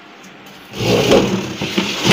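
Scraping and rubbing noise from a white plastic chair being moved over the floor. It starts under a second in and keeps going.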